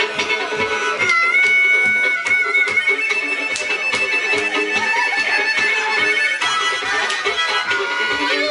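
Live acoustic folk music: a fiddle and a harmonica playing long held melody notes over acoustic guitar strummed in a steady beat.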